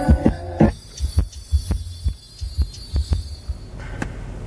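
Bass-heavy music played loud through two Audioque HDC-A 15-inch subwoofers, heard inside the car's cabin: deep sustained bass notes under a beat of sharp hits.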